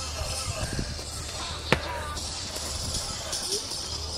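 One sharp smack from the dancer's krump movement, about two seconds in, over steady outdoor background noise with faint distant voices.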